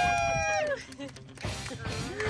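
A person's long, high 'woo' cheer, held steady and then dipping in pitch as it trails off under a second in. Quieter voices follow.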